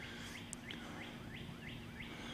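A bird singing: a run of short, repeated chirps, about four a second.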